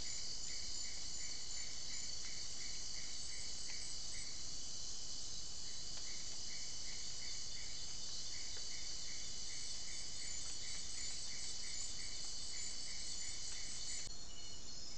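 Night forest insect chorus of crickets and katydids: a steady, dense high-pitched trilling, with a lower chirp repeating about three times a second that stops briefly a little after four seconds and then starts again.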